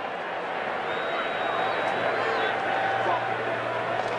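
Stadium crowd noise, a dense haze of many voices that grows gradually louder as a long field goal attempt is set up.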